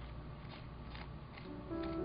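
Faint scratching and tapping of a wooden brush handle dragged through wet metallic acrylic paint on a paper journal page, over a low steady hum. Near the end a held musical note starts and carries on.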